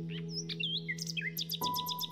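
Birds chirping over slow, soft relaxation music: a held chord slowly fades while several quick, sliding bird chirps sound above it, and a new single note comes in near the end.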